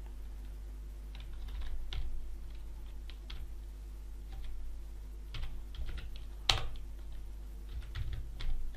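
Typing on a computer keyboard: irregular keystrokes with one sharper, louder key strike about six and a half seconds in, over a steady low hum.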